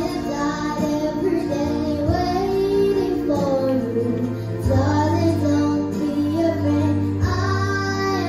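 A young girl singing into a handheld microphone over a backing track, holding long sustained notes.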